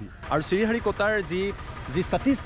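A man talking, over a low steady rumble.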